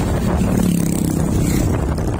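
Wind rushing over the microphone and road rumble from the moving vehicle, with a small motorcycle engine humming as it passes close by, then dropping slightly in pitch as it goes.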